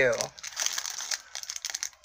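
Small clear plastic bag crinkling as fingers handle it, a run of soft, irregular crackles.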